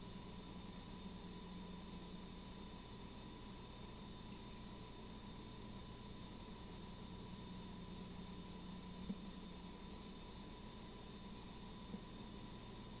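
Quiet, steady background hum and hiss of room tone, with a faint steady high tone and one small tick about nine seconds in.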